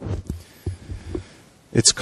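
Handling noise from a worn headset microphone being adjusted at the ear: a few soft, muffled low thumps and rubbing in the first second or so.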